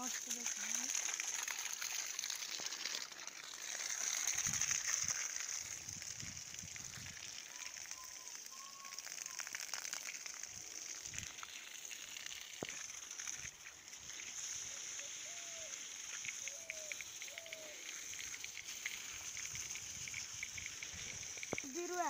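Clear plastic sheeting over a vegetable bed rustling and crinkling as it is handled, over a steady high hiss, with a louder rumbling stretch a few seconds in and faint voices now and then.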